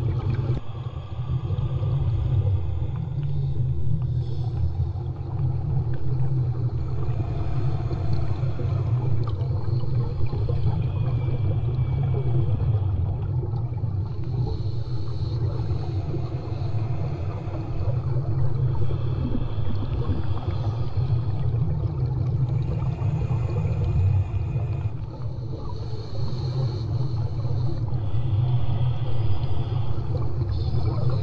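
Steady, muffled low rumble of sound picked up by a camera submerged underwater, with fainter hissing that comes and goes every few seconds.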